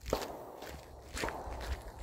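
Footsteps of a person walking along a trail, a few steps heard.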